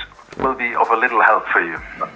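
Speech only: a man talking over a video-call line, his voice thin and cut off at the top, like a phone or radio.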